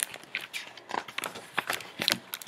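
A hardcover picture book being handled and opened, its pages turned: a string of small rustles, clicks and crackles of paper and cover.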